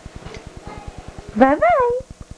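A baby of about six and a half months gives one loud, high squeal about a second and a half in. Its pitch rises, falls and rises again over about half a second. Under it runs a steady low pulsing buzz.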